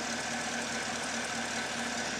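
Chevrolet Camaro SS's 6.2-litre V8 idling steadily in park, with a low, even hum.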